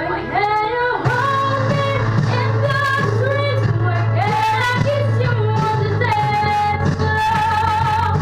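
A young boy's unbroken voice singing a slow melody, holding long notes that slide between pitches, over a steady musical accompaniment.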